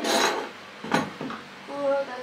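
Satay skewers being handled on a tabletop electric grill plate: a short scrape at the start, then a single sharp click about a second in.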